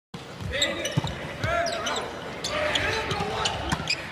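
Indoor volleyball rally: the ball is struck several times with sharp slaps and thumps, and sneakers squeak on the hardwood court between hits.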